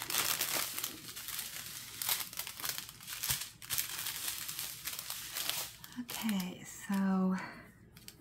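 Thin plastic strip of sealed diamond-painting drill bags crinkling as it is pulled out and unfolded by hand. The crinkling is densest over the first six seconds and dies away near the end.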